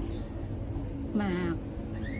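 A woman's voice choked with sobs, crying out one word about a second in, the pitch falling and rasping, over a steady low background hum.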